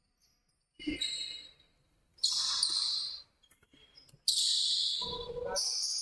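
Court sounds of an indoor basketball game, a ball bouncing among players' movement, coming in three short bursts about a second long.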